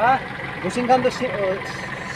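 Men talking in Hindi over a steady low background rumble.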